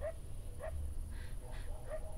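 A woman's faint whimpering: four or five short, quiet, voice-like sounds spread through the two seconds, with no words.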